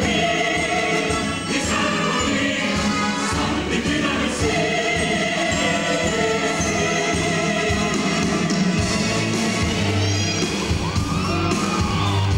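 A stage-musical ensemble chorus singing together with instrumental accompaniment, in a live performance.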